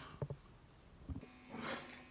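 A few faint clicks and a soft low thump, then a quick breath drawn in, with no guitar playing.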